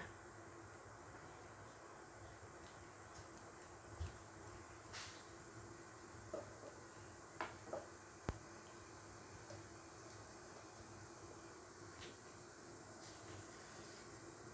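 Near silence: faint steady room hum with a few short, soft clicks scattered through the middle.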